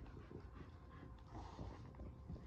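Faint soft rustling and scuffing of a Boston terrier mouthing and shaking a plush toy on a rug.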